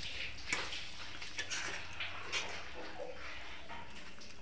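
Curry simmering in a steel kadai, sizzling and bubbling as fried small fish are added, with a few light clinks of a steel plate and spatula against the pan.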